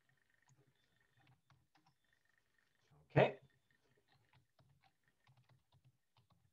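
Faint computer keyboard typing and mouse clicks, with one louder, brief knock about three seconds in.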